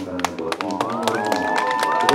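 Audience clapping in scattered, uneven claps, mixed with many voices and a few rising cheers and calls.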